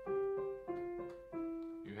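Piano melody played legato by the right hand: a few single notes, about one every two-thirds of a second, each ringing on until the next and stepping slightly downward.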